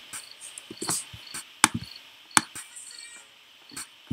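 Computer keyboard keys and mouse clicking as a word is typed: about six separate sharp clicks spread unevenly over the few seconds, on a faint background hiss.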